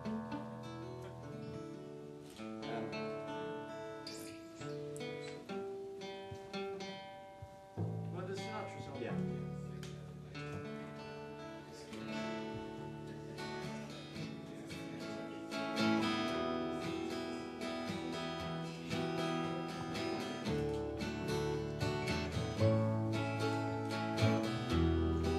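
Two acoustic guitars playing the instrumental opening of a song, with an upright double bass, the playing growing fuller about two-thirds of the way through.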